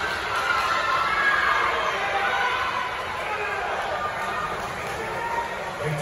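Crowd of spectators at an indoor pool shouting and cheering on swimmers: a steady blur of many voices, with no single voice standing out.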